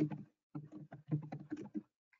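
Typing on a computer keyboard: an irregular run of key clicks that stops near the end.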